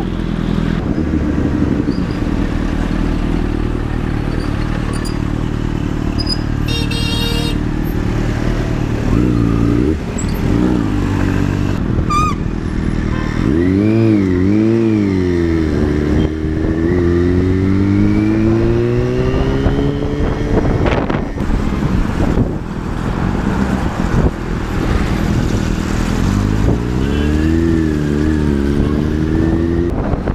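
Motorcycle engine idling steadily, then pulling away. The engine note rises and falls as the throttle is worked, climbs in one long rise under acceleration, drops suddenly, and revs up and down again near the end.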